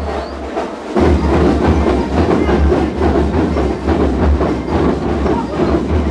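Marching percussion band playing a fast, dense drum rhythm, with bass drums under rattling snare drums. The bass drums drop out briefly and come back in about a second in.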